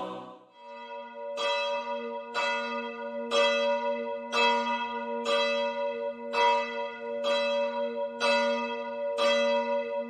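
A church bell struck about once a second, around ten strokes of one pitch, each ringing on into the next.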